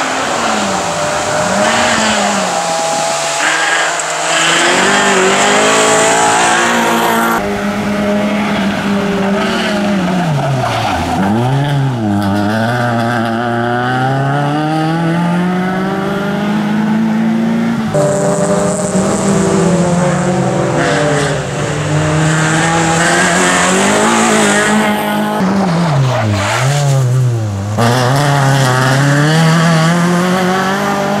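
Fiat Seicento rally car's small four-cylinder engine being driven hard, revving up and dropping again and again through gear changes and braking for tight turns, with tyre noise. The sound jumps abruptly twice.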